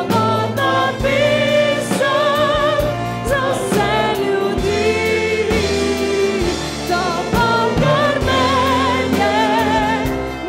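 A wind band playing while a woman sings solo over it with a strong vibrato, a men's choir singing along with them.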